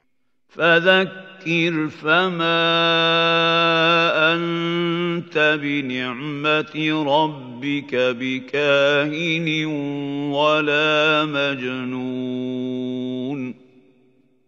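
A man's voice reciting a verse of the Quran in Arabic in the slow, melodic murattal style, with long held vowels. It starts about half a second in and ends shortly before the end.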